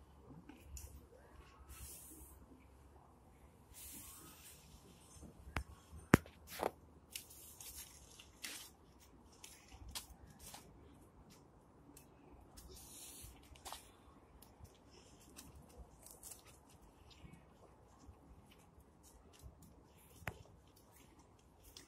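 Paper notes rustling, tearing and crumpling in the hands as they are fed into a small open fire in a metal brazier, with scattered light crackles from the burning paper. A sharp click stands out about six seconds in.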